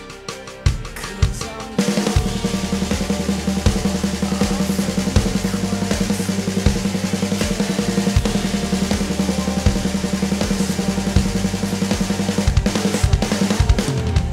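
Electronic drum kit played along with a heavy rock backing track: a few sparse kick-drum hits, then about two seconds in the full band comes in and the drumming turns fast and dense, with a run of accented hits near the end.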